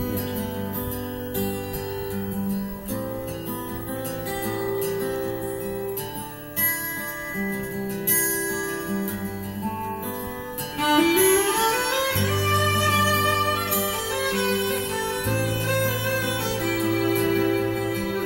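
Instrumental intro of a country backing track: acoustic guitar and fiddle, with a rising slide about ten seconds in and low bass notes joining soon after.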